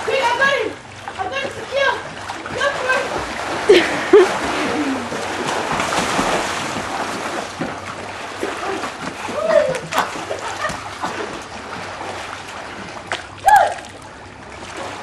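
Water splashing and sloshing in a swimming pool as several people thrash about in it, with short shouts and calls from the swimmers.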